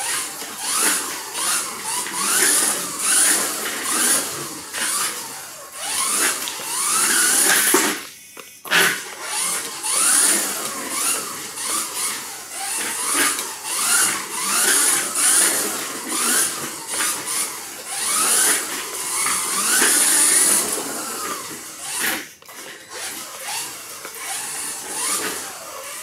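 Kyosho Mini-Z RC car's small rear-mounted electric motor whining, rising and falling in pitch again and again as the throttle is squeezed and let off around the corners. The whine cuts out briefly about a third of the way in and again near the end.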